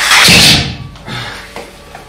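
A sudden, very loud bang or crash that dies away in under a second.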